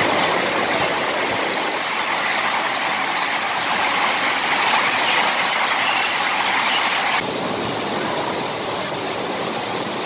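Steady rain on the court's roof, heard as a loud, even hiss that eases slightly after about seven seconds, with a few faint knocks.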